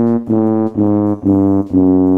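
Sad-trombone sound effect: a trombone plays a few short notes stepping downward, the last one held. It is the comic 'wah-wah-waaah' that marks a failure or letdown.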